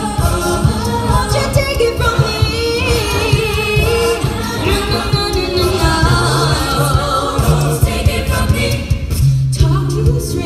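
A mixed-voice a cappella group singing live through a PA, several voices in harmony over a low bass line and a steady beat.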